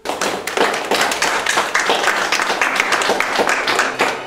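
A group of people clapping in applause, starting abruptly and keeping up a steady, dense patter of claps.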